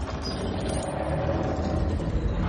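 Film sound-effects mix: a heavy, steady low rumble under a rushing roar.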